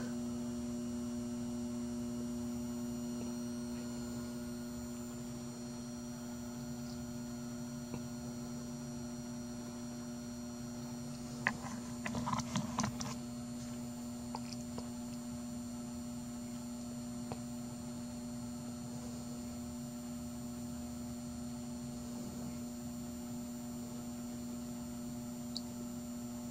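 Steady electrical hum, with a thin high whine above it, from a PWM circuit pulsing current from a battery charger into a car battery; the hum is the sign that power is going through the circuit. A short cluster of clicks and knocks comes about twelve seconds in.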